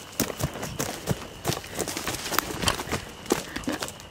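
Footsteps of someone running over the ground: an irregular series of thuds and scuffs.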